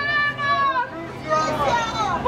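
Protesters' raised voices chanting or shouting, with long, drawn-out syllables.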